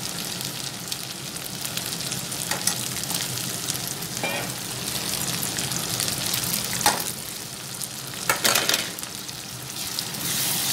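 Green chillies and chopped vegetables sizzling steadily in hot oil in a kadai, stirred with a spatula that scrapes the pan a few times, most sharply in the second half.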